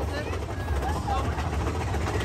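Roller coaster ride heard from a rider's seat: a steady low rumble of the train running on the track, with rushing air.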